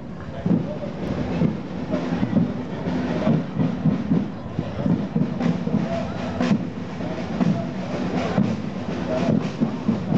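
Parade drums playing a quick, steady cadence, mixed with crowd voices.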